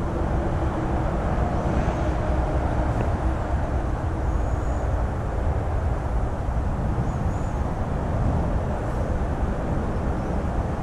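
Steady low outdoor rumble with a few faint, short high chirps.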